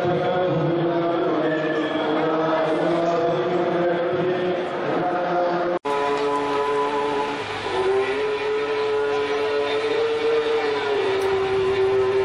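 Voices chanting a liturgical hymn in long held notes that move slowly in pitch. The chant breaks off for an instant about six seconds in and goes on with another long held note.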